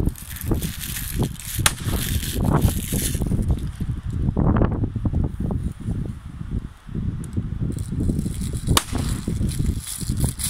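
Wind rumbling on the microphone, with rustling and a couple of sharp clicks from handling outdoors.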